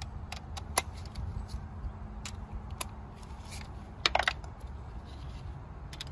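Scattered light metallic clicks and clinks of a spark plug socket extension and cordless ratchet being fitted together and seated on the plug, with a short cluster of louder clinks about four seconds in.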